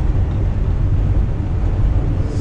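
Steady low drone of a semi truck's diesel engine and road rumble, heard inside the cab while cruising at highway speed.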